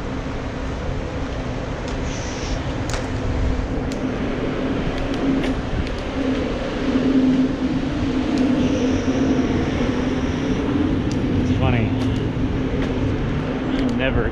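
Wind noise and city traffic heard from a moving bicycle, with a steady low hum throughout and a thin high whine lasting about two seconds midway.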